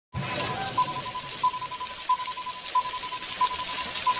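Logo-intro sound effect: a ping at one pitch repeating about every two-thirds of a second, each trailing off in quick echoes, over a shimmering hiss.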